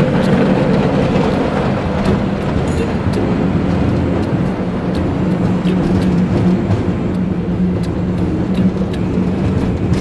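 Gondola cable car cabin running uphill along its haul rope: a steady rumble and low hum, with scattered light clicks.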